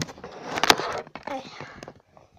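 Handling noise from the camera: a sharp knock, then about a second of rustling and scraping with a sharp click in the middle as it is grabbed and moved close to the microphone. A child's short word follows.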